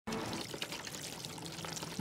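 Hands scrubbing and squeezing clothes in a plastic basin of soapy water, making irregular small splashes and sloshing.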